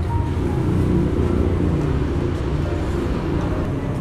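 Steady low rumble of road traffic from the toll road, with faint background music underneath.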